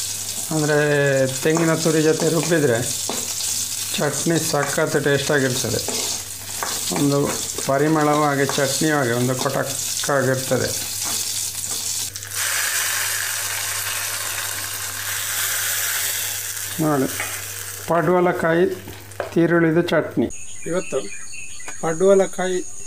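Green chillies sizzling as they fry in hot oil in a pan, being stirred. A voice talks over much of it, and for a few seconds past the middle the sizzling is heard on its own. Near the end the sizzling cuts off and a steady high insect trill takes over.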